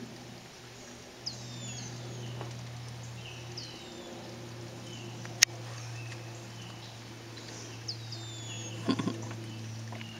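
Birds calling around a pond: short high whistles that slide downward, repeated every second or two, over a steady low hum. A single sharp click comes about halfway through, and a brief low burst near the end.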